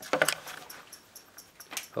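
Overvolted CRT television chirping in a fast, even rhythm of about five high ticks a second. The set was killed by amplified audio, about 15 V peak to peak, fed into its video input.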